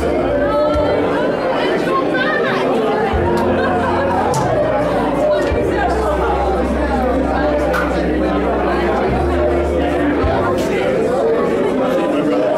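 A room full of people chatting and greeting one another at once, many voices overlapping, over background music with long held bass notes.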